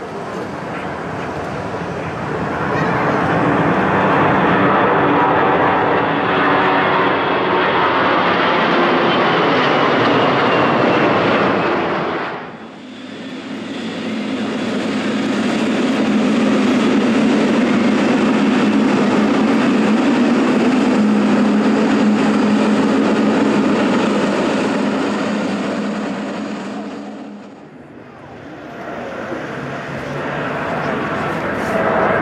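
Jet airliner engines at high thrust as a four-engine Airbus A340 takes off, building over the first dozen seconds. After a sudden break, a Boeing 777-300ER's GE90 turbofans run loud and steady with a strong low hum, dipping briefly again near the end.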